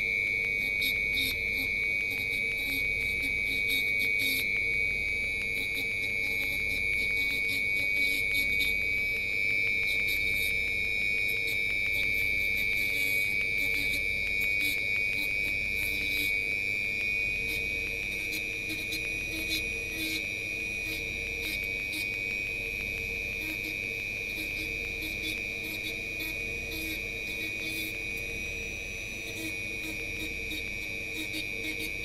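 Handheld rotary tool with a sanding drum running, a steady high-pitched motor whine, as the drum grinds into XPS foam with scattered scratchy clicks.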